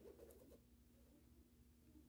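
Near silence: room tone with a faint low hum, and faint rustling of card and a stamp being handled in the first half-second.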